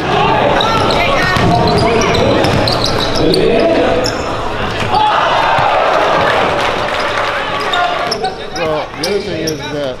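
Basketball dribbled and bouncing on a hardwood gym floor during a youth game, under a steady din of crowd and players' voices echoing in the hall.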